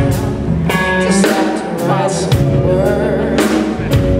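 Live blues band playing: a woman singing over electric guitar, bass guitar and drum kit, with several sharp drum and cymbal hits.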